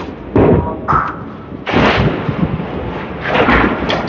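Candlepin bowling alley clatter: three loud crashes of balls and pins about a second and a half apart, the last with a low thud.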